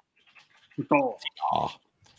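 Brief bursts of a man's voice, with no clear words.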